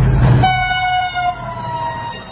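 A train passing close by. It starts with a loud low rumble of locomotive and wheels, then about half a second in the locomotive's horn sounds. The horn is a steady chord that slowly falls in pitch as the train goes past.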